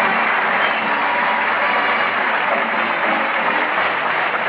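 Studio audience laughing and applauding, a steady wash of sound, with faint orchestra music underneath, heard on an old radio broadcast recording.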